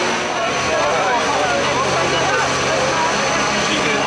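Crowd chatter, many voices talking at once with no single speaker standing out, over a steady low mechanical hum.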